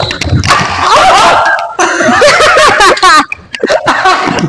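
Loud voices calling out and laughing, with a burst of rapid laughter about three seconds in.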